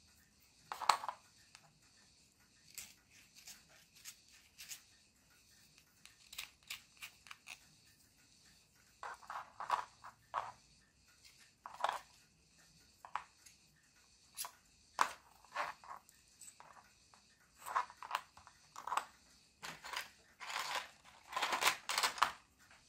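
Short, irregular scrapes and scratches of a small hand tool and needle file trimming a 3D-printed plastic gear and axle, cleaning the spread-out first layer off the part. The strokes are sparse at first and come thicker from about nine seconds in.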